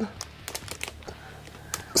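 Clear plastic packaging crackling in short, irregular clicks as a wrapped figurine is handled.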